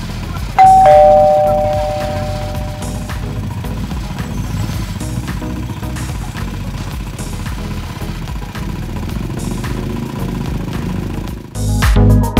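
A two-note ding-dong chime, a higher tone then a lower one, rings out over about two seconds near the start over background music with a steady beat. The music grows much louder near the end.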